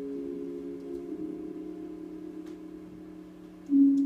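Instrumental gap in a quiet live song: a held chord of several steady tones rings and slowly fades, then a new, louder chord comes in near the end.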